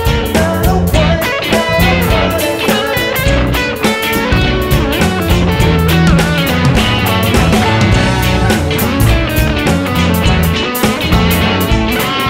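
A rock band playing an instrumental passage live, with guitar and a drum kit keeping a steady beat and no vocals.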